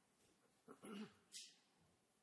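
Near silence: room tone of a large hall, with one faint brief sound about a second in and a short hiss just after it.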